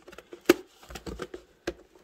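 Glossy cardboard parts box being handled and its lid flap pried open by hand: a scatter of small clicks and taps, the sharpest about half a second in.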